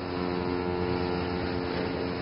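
A steamship's horn sounding one long, steady, low blast, over a faint background hiss.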